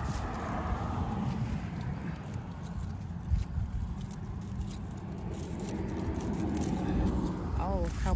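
Steady low wind rumble on the microphone, with a few light clicks as pruning shears cut flower stems, and a voice starting just before the end.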